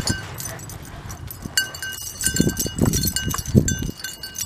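A small metal bell jingling in short ringing bursts several times, over dull footsteps on dirt that grow more frequent in the second half.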